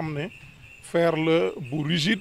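A man speaking in a short phrase, with a steady thin high-pitched tone running behind it throughout.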